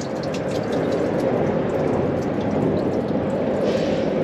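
Grey water draining from a motorhome's waste-water tank, a steady rush of water pouring out into the drain.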